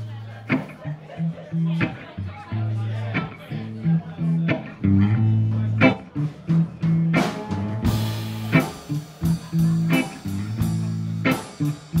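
Live blues band playing: a walking bass guitar line under guitars, with drum strokes keeping time. About eight seconds in the drums open up with cymbals and the band's sound gets fuller and brighter.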